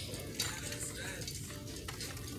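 Fabric rustling and brushing as hands handle throw pillows, including a faux-fur one, on a store shelf, with a couple of light knocks.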